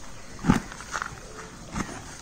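A hand mixing and pressing dry, crumbly potting medium in a tub: a few short scraping, rustling strokes, the loudest about half a second in.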